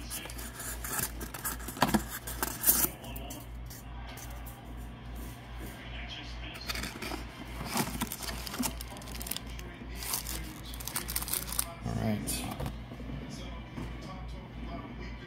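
A cardboard trading-card box being opened by hand and its foil-wrapped card packs pulled out and set down: paper and cardboard rustling and scraping with crinkling wrappers, and a few sharp snaps and clicks, the loudest about two and three seconds in.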